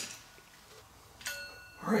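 A metal Zebco 33 reel part clinks once about a second in and rings briefly with a clear tone.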